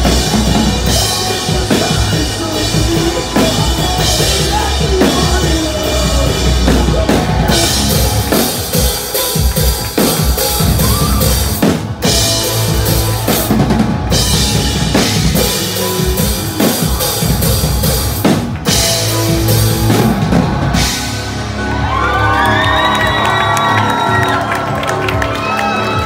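Live rock band playing loud, with a pounding drum kit and electric guitars. About 21 seconds in the drums drop out, leaving sustained tones that bend up and down in pitch.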